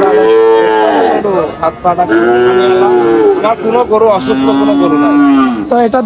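Young bulls mooing: three long moos, each a second or more, spaced about a second apart, each dropping in pitch as it ends.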